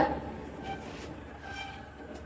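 Quiet background noise with a low steady hum, and a few faint brief sounds.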